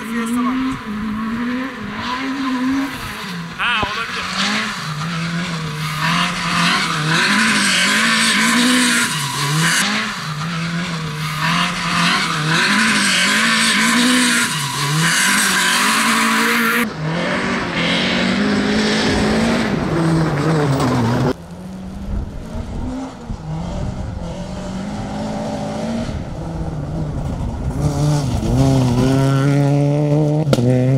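Peugeot 208 R2 rally car's 1.6-litre four-cylinder engine revving hard, its pitch rising and falling again and again through gear changes, with gravel hissing under the tyres. The sound changes abruptly twice, around the middle, where different passes are cut together.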